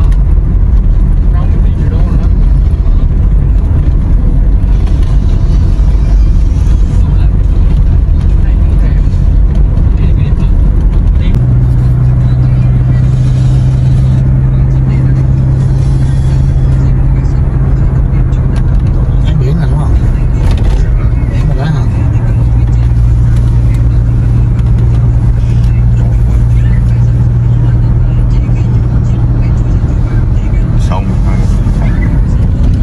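Road noise and engine hum inside a moving car's cabin, a continuous low drone. A steady low tone joins about a third of the way through and holds on.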